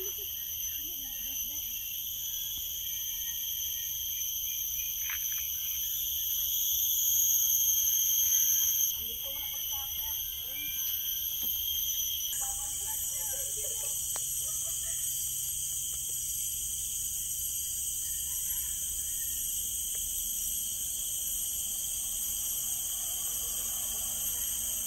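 Forest insects droning in several steady, high-pitched bands. One swells louder and then stops abruptly about nine seconds in, and the chorus changes again a few seconds later.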